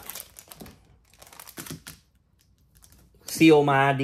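Scattered light clicks and crinkles from handling a shrink-wrapped box set as it is picked up, then a short quiet gap before a man starts talking near the end.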